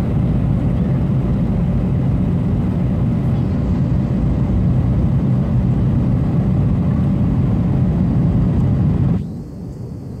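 Steady cabin roar of an Airbus A319 airliner in descent, heard over the wing: engine and airflow noise, heaviest in the low range. It drops suddenly to a quieter, duller level about nine seconds in.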